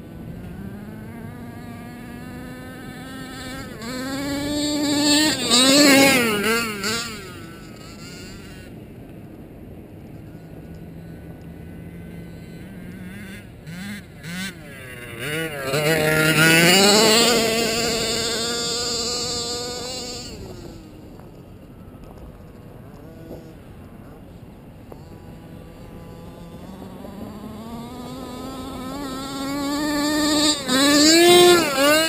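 HPI Baja 1/5-scale RC car's small two-stroke gas engine buzzing, held at a lower steady pitch and revved up hard twice: once about four seconds in and again around sixteen seconds in. Each time the whine rises and wavers in pitch before dropping back.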